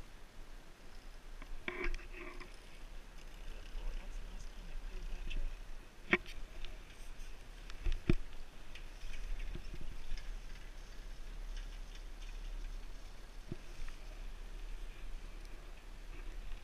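Steady low wind rumble on the microphone of a rider on a moving chairlift, with a few sharp clicks about six, eight and thirteen seconds in.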